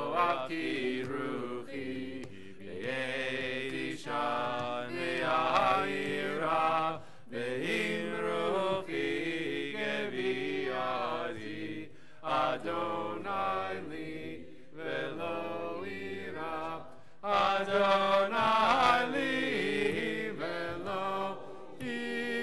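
Voices singing a Hebrew prayer melody together, in phrases of a few seconds with short breaks between them.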